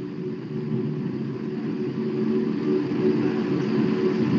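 A steady low mechanical hum with a light rumble, growing slightly louder.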